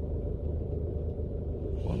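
Steady low rumble of a car heard from inside its cabin, the engine running; a man's voice starts just at the end.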